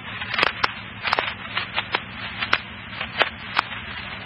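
Scanner radio static between transmissions: a steady hiss with scattered sharp crackling clicks.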